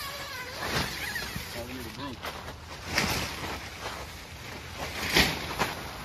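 A tent window's zipper and nylon fabric being handled: brief rasping tugs and rustles about a second in, at three seconds and, loudest, at about five seconds, with faint voices in the background.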